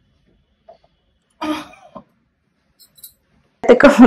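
A short, cough-like vocal sound from a person about one and a half seconds in, during a neck adjustment, otherwise mostly quiet. Near the end comes a loud burst of sharp clicks mixed with a voice.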